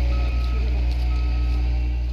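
Heavy wheeled machine's engine running with a steady low rumble while its reversing alarm beeps about once a second, twice in quick succession.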